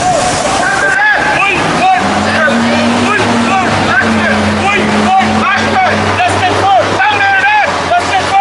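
Marching protesters shouting chants in short, high-pitched repeated calls. A large vehicle's engine runs under them at a steady low hum from about two to six seconds in.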